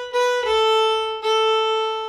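Violin (fiddle) bowed in a swung, long-short eighth-note rhythm: a short note, then a step down to a lower note held over two bow strokes and left to fade.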